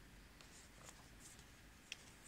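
Near silence: room tone with faint paper rustling and a small click near the end as a printed paper card is swapped for the next one.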